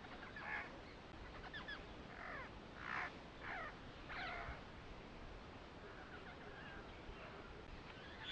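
Birds calling faintly: a series of short, downward-sweeping calls, bunched in the first half and sparser later, over a soft steady hiss.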